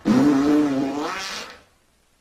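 A long cartoon fart sound effect, one wavering tone lasting about a second and a half before it trails off.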